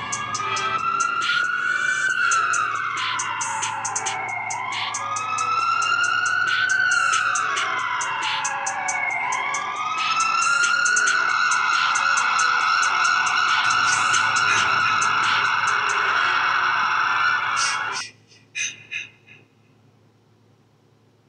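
A siren wailing, rising and falling in pitch twice and then holding a high note, over music with a steady beat; both cut off suddenly near the end.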